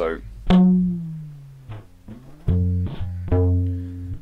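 Piezo-amplified fretless rubber band guitar (Symetricolour Chitar) being plucked. A note about half a second in slides down in pitch as it rings, and two louder low notes follow in the second half. The stretchy rubber bands give it an unsteady, imprecise lo-fi pitch.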